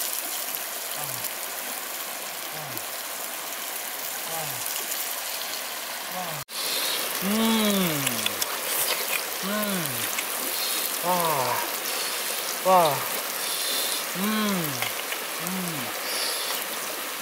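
A man's voice repeating a wordless, drawn-out "wow" that rises and falls in pitch, about once every second and a half, louder after a break about six seconds in. A steady hiss runs underneath.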